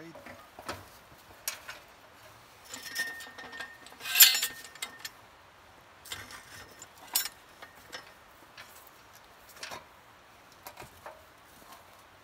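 Scattered knocks and metallic clinks as wooden packing pieces are fitted against adjustable steel props in a stone-wall window opening. The loudest clatter comes about four seconds in, just after a short metallic ring.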